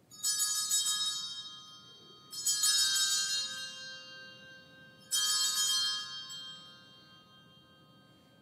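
Altar bells rung three times at the elevation of the consecrated host, each ring a bright cluster of high tones that dies away, about two and a half seconds apart.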